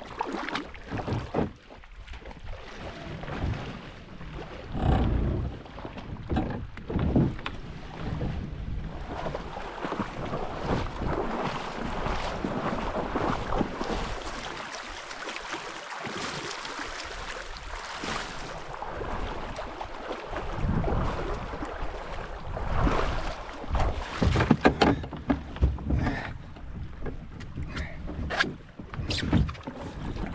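Shallow river water rushing through a riffle, with splashing as a person wades through it towing a loaded canoe on a rope. Sharp knocks and splashes come and go throughout, clustering near the end.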